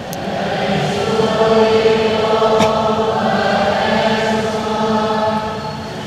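Choir and congregation singing the response to the Gospel together in a slow chant on a few long-held notes, swelling about a second in and fading near the end.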